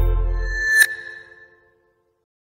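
Intro music's closing synthesizer chord over a deep bass note, dying away, with a single bright ping a little under a second in as the logo appears; it fades out completely soon after.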